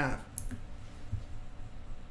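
The last syllable of a man's voice fades out, then quiet room tone with a short sharp click about half a second in and a fainter tick just after.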